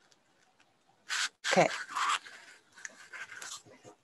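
Over a video call, a short breath and then a single spoken "okay" with a falling pitch, about a second and a half in, followed by faint breathy, rustling noises.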